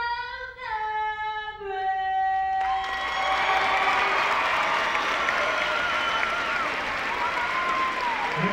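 A woman singing solo and unaccompanied, stepping down to a long held final note. About three seconds in, the note gives way to a large crowd applauding.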